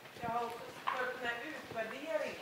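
A woman speaking, faint and distant as if off-microphone, with a few soft knocks between her words.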